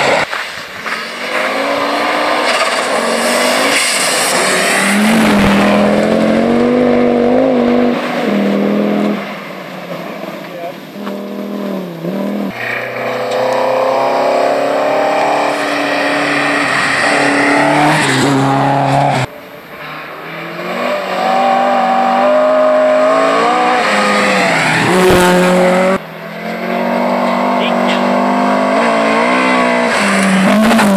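Historic rally cars at full speed on a gravel special stage, engines revving hard and falling away as the drivers shift and lift, in several separate passes cut together, with sudden jumps in the sound about 12, 19 and 26 seconds in.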